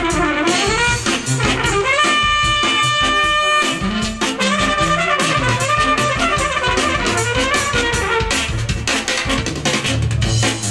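Brass band music: a trumpet plays a melody over a steady drum beat, holding one long note about two seconds in.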